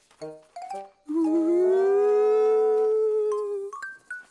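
A few short musical notes, then one long howl that rises slightly and holds steady for nearly three seconds before fading.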